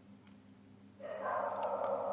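Quiet room tone, then about halfway through a dog's drawn-out vocal sound starts suddenly and holds steady.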